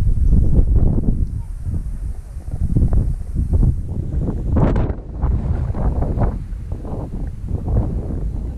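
Wind buffeting the microphone of a selfie-stick action camera: a loud, gusty low rumble that swells and dips, with a brief sharper rustle about halfway through.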